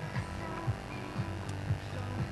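Steady electrical mains hum, with brief low thumps now and then.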